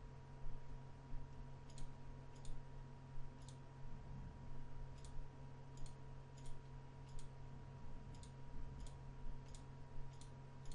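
Computer mouse button clicking: about a dozen separate short clicks at an uneven pace, over a steady low electrical hum.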